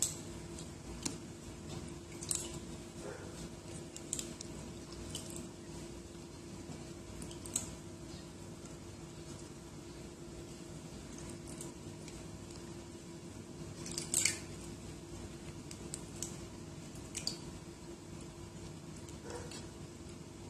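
Faint soft taps and clicks of raw potato slices being set down by hand onto meat patties in a baking pan, a few scattered through, the loudest about 14 seconds in, over a steady low hum.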